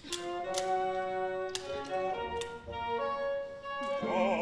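Orchestral violins playing held notes that move in steps, with about five sharp wooden clicks of abacus beads being flicked over them.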